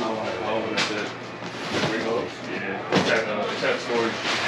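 Indistinct men's voices talking in a small shop, with two short knocks, one about a second in and one about three seconds in.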